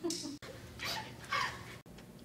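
A person's short, breathy vocal sounds, heard three times and cut off abruptly twice by edits.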